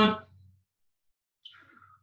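The end of a man's spoken word, then dead silence, with a faint, brief falling sound near the end.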